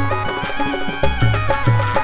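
Live Rajasthani folk-devotional band music: a held, reedy keyboard melody stepping between notes over a steady hand-drum beat.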